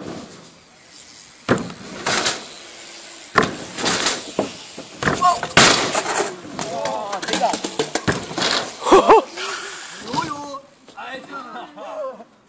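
A BMX crash on a wooden ramp: several sharp thuds and knocks spread over the first eight seconds or so, with voices calling out from about the middle on.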